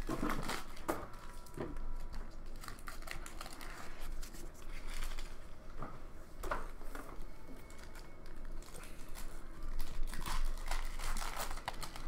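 Hockey card packs being opened and handled: foil wrappers crinkling and tearing in irregular bursts, with cards sliding against each other, busiest at the start and again about ten seconds in.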